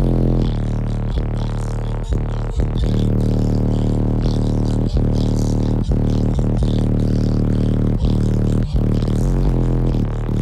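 Bass-heavy music played very loud through a car audio system of four DS18 EXL 15-inch subwoofers in a Q-Bomb box, heard from inside the car's cabin. Deep, long-held bass notes fill the sound.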